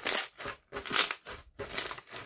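Green slime packed with small beads being squeezed and kneaded by hand, giving a crunchy, squishing crackle with each squeeze. Three squeezes: near the start, about a second in, and near the end.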